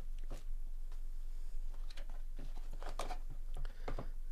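Cardboard trading-card boxes being handled with gloved hands: a string of light scrapes and taps as two sealed inner boxes are slid out of the opened outer hobby box.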